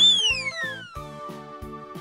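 Children's background music with a steady beat. Over it, a whistle-like sound effect jumps up in pitch right at the start, then slides slowly down over about a second and a half.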